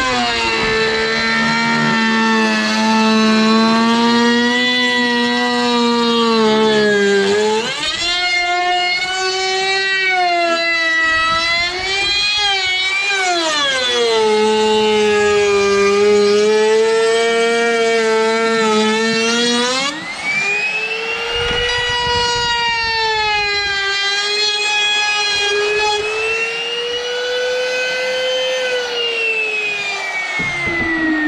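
Compact trim router running at high speed, its whine dropping in pitch as the bit bites into the pine and rising again as the load eases. Near the end the pitch falls steadily as it slows.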